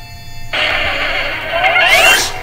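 Cartoon programme audio from a television or tape recording: after a short gap, music and cartoonish sound effects start about half a second in, with rising sliding tones and a loud, hissy burst at the end.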